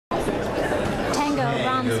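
Crowd chatter in a large hall: many people talking at once, with one voice coming through clearly near the end.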